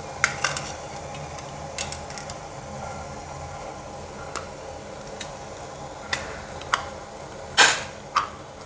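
Stainless-steel idiyappam press and steel plates clinking and knocking as they are handled, a scattered series of short metal knocks with one louder clatter near the end.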